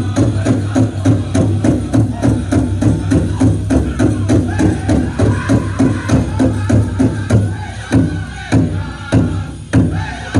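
A powwow drum group playing a chicken dance song: a big drum struck together in a steady, quick beat under group singing. About eight seconds in, the beat opens out into fewer, more widely spaced strokes.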